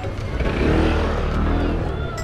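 Motor scooter passing close by, its engine running louder from about half a second in and easing off near the end.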